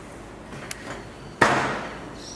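A single sharp knock about a second and a half in, ringing briefly as it dies away, after a couple of faint clicks.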